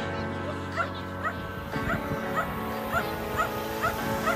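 Background music with sustained tones, over a dog barking and yipping repeatedly, about two short barks a second.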